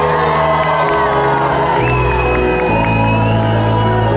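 Live folk-rock band playing acoustic guitar, piano and bass in a hall, with no lead vocal. A high, held cry from the crowd rises over the music about two seconds in.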